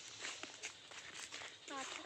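Footsteps on a dirt path: irregular light crunches and scuffs, with a short voice near the end.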